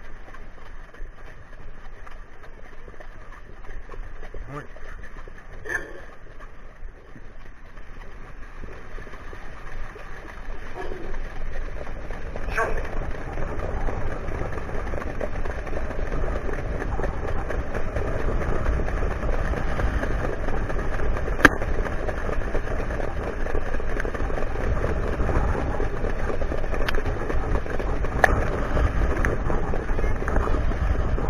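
Wind rushing over the microphone of a camera on a trotting sulky, with the rumble of the horse and sulky wheels on the dirt track, growing louder as the trotter picks up speed. A few short sharp clicks come near the end.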